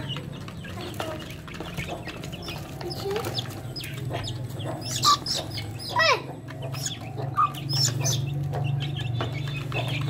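Half-grown Aseel–desi mix chickens clucking and peeping. Several sharp, high calls come around the middle, one of them falling steeply in pitch, over a steady low hum.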